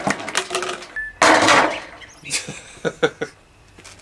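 A hammer knocking on a sheet-metal panel, with a loud clattering crash about a second in as a plastic baby doll is knocked off its feet and lands on the metal, followed by a few lighter knocks.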